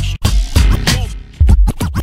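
Hip hop track with turntable scratching: quick scratches sweeping up and down in pitch, several a second, over a beat with heavy kick drum and bass.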